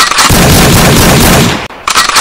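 Gunfire sound effect in a dance routine's edited soundtrack: a sudden, loud burst of noise lasting about a second and a half, then a quick run of sharp shots starting near the end.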